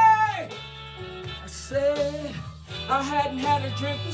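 A woman singing into a handheld microphone over a backing track. A long, high held note with vibrato ends just after the start, then shorter sung phrases follow over the accompaniment about two and three seconds in.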